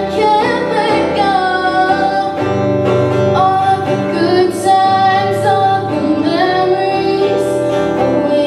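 A young female singer performing an original song live, singing held melodic notes into a microphone while accompanying herself on an acoustic-electric guitar.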